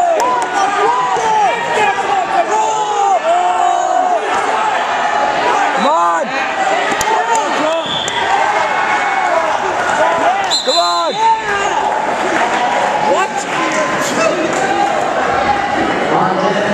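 Rubber-soled wrestling shoes squeaking over and over on a vinyl wrestling mat as two wrestlers scramble, with louder sweeping squeaks about six and eleven seconds in. Voices carry in the gym in the background.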